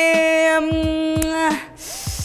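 A young woman's voice holding one long, level drawn-out vowel, dipping slightly in pitch and breaking off about one and a half seconds in, as she hesitates over her choice. Under it runs a background beat of soft, regular low thumps.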